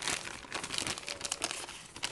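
Popcorn bag crinkling as it is handled, a run of irregular crackles.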